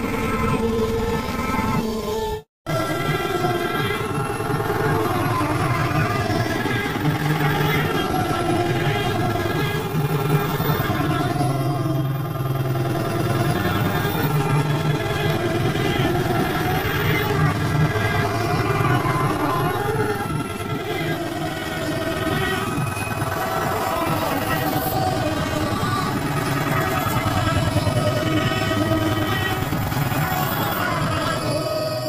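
Commercial soundtrack music run through heavy distorting audio effects, a dense, loud wash of layered tones, with a brief cut to silence about two and a half seconds in.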